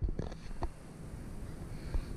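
A few short, soft knocks or clicks in the first second, then low background noise.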